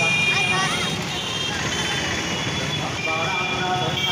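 Busy street ambience: a crowd of schoolchildren chattering as they walk, over the noise of passing road traffic.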